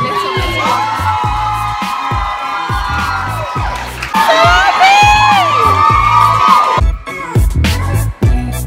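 A group of young women cheering and whooping in long, high, held shouts over background pop/hip-hop music with a steady bass beat. The cheering gets louder about halfway through and stops shortly before the end.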